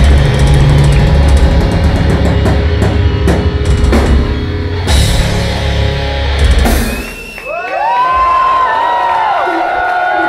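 Metal band playing live, with pounding drum kit and distorted guitars, until the song stops about seven seconds in. After that the crowd cheers, with many short rising-and-falling whistles.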